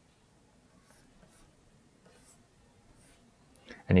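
Faint scratching of a pen stylus drawing quick strokes on a graphics tablet, several short strokes in a row.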